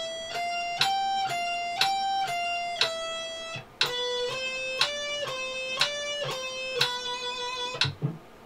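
Electric guitar playing a slow single-note picking exercise at 60 beats per minute, about two notes a second: a 12th–13th–15th-fret pattern rising and falling, then the same pattern played again lower.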